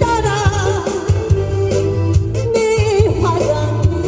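A woman singing live into a handheld microphone over a backing track with a steady beat, her held notes wavering with vibrato.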